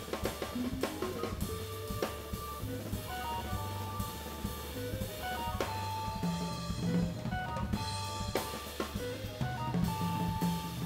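Live jazz organ trio playing: the organ's bass line with held chords over it, and a drum kit with cymbal and snare strokes throughout, with electric guitar. The sustained organ chords come forward in the second half.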